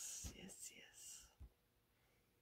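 Near silence, with faint whispering in the first second.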